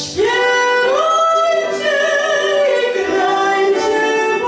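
Two women singing a Christmas carol together, holding long notes that glide upward into each phrase, with a short break for breath at the start and another near the end.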